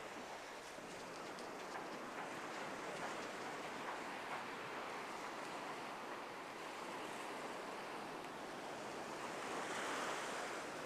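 Ocean surf washing onto a sandy beach: a steady rushing noise of breaking waves that swells a little near the end.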